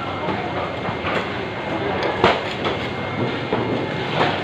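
Steady market background noise with a few sharp knocks, the loudest about halfway through: a steel cleaver chopping through a stingray onto a round wooden chopping block.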